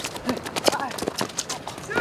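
Rapid, irregular taps and scuffs of players' shoes running on an artificial-turf futsal court, with faint voices.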